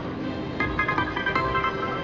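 Video slot machine's electronic bonus music playing while the reels spin on a free spin, with a quick run of short bright beeping notes about half a second in.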